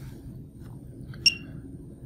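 A single brief, high-pitched click-like blip about a second in, from a key being pressed on a Horner XL Series controller's keypad. It sits over faint room hum.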